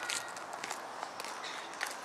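Hushed outdoor gathering with a light hiss and a few irregular light clicks and scuffs: footsteps on paving stones.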